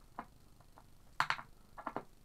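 A screw being turned back out of a hole in a wooden tabletop: light clicks, then a sharper, louder knock about a second in and a quick run of small clicks near the end.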